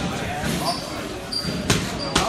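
Boxing gloves striking focus mitts: sharp slapping punches, the loudest about a second and a half in, over voices in the gym.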